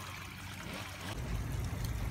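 Water trickling in a small pond. About a second in, a low steady rumble joins it.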